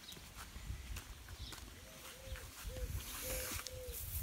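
A dog whining softly, a run of about six short arching cries in the second half, over low irregular thuds.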